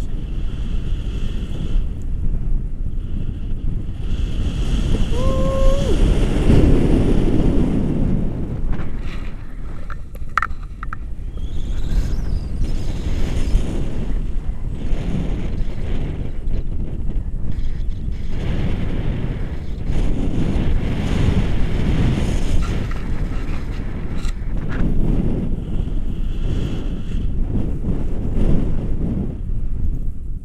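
Wind rushing over the microphone of a camera carried in flight on a tandem paraglider: a loud, low rumble of buffeting that swells and eases in gusts.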